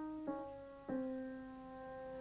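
Grand piano chords, each struck and left to ring and fade: one about a quarter second in and another just before one second, held softly.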